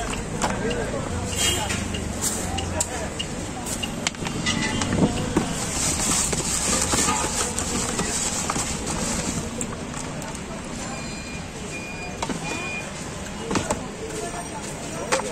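Busy roadside street ambience: passing traffic and people talking in the background, with scattered clicks and knocks and a few short high beeps near the end.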